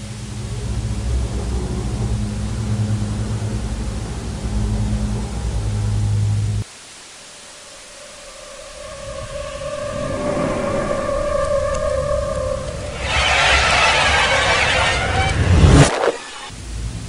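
Experimental electronic soundscape. A steady low drone cuts off suddenly about six and a half seconds in. After a short quiet gap, sustained higher tones build up, and then a loud rushing hiss swells in toward the end.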